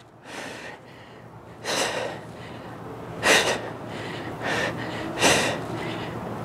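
A person breathing hard through a set of dumbbell push presses, with short forceful breaths about every second and a half that are loudest about three seconds in and near the end.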